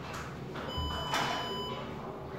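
A projector's electronic beep as it finishes shutting down: one steady, buzzy tone about a second long, starting a little under a second in. A couple of soft knocks sound around it.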